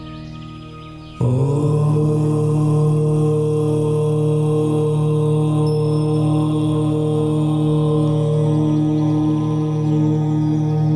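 A chanted "Om" comes in suddenly about a second in and is held as one long, steady note over soft ambient meditation music.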